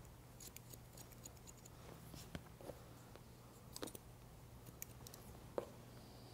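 Hair-cutting shears snipping through wet hair: scattered faint snips, a few a little louder. The stylist is working a cutting line on a graduated bob.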